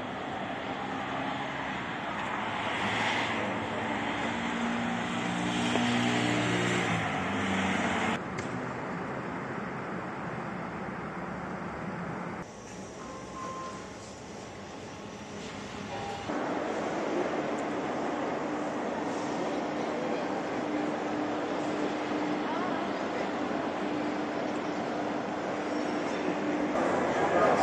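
Traffic ambience with an engine hum for the first eight seconds, then background ambience that changes abruptly at several cuts, ending in the steady hum of a large indoor hall.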